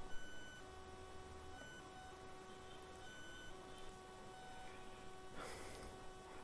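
Faint electrical hum in a pause: a few thin steady tones that cut in and out every second or so, with a soft click just after the start and a faint hiss shortly before the end.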